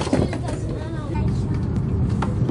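Steady low hum inside a Hokkaido Shinkansen passenger car, with other people's voices in the background.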